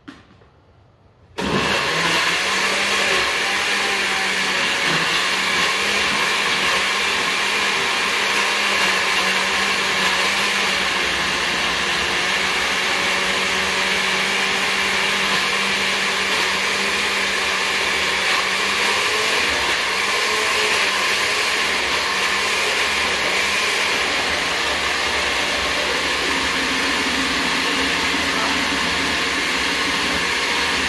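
A short click, then a countertop blender switched on about a second and a half in and running steadily at full speed, puréeing a full jar of whole Scotch bonnet peppers.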